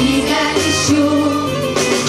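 Children's choir singing a slow song in unison over held instrumental notes.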